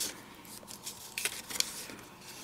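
Cardstock pieces rustling and tapping as they are handled: a faint papery rustle with a few light clicks, the clearest a little over a second in.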